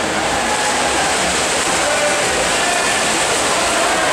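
Spectators cheering and shouting in an echoing indoor pool hall, over the splashing of swimmers racing butterfly; a steady, dense din with no pauses.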